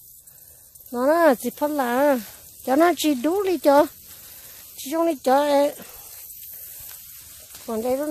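A person's voice speaking in three short bursts of phrases, over a faint steady high hiss.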